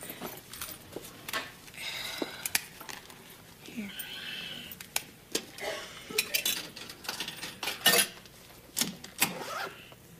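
Coins clinking and a series of metallic clicks and knocks from a soda vending machine being worked.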